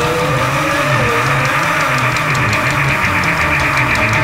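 Instrumental rock music: sustained distorted electric guitar over a bass line and a steady cymbal beat, with one note bending in pitch during the first second.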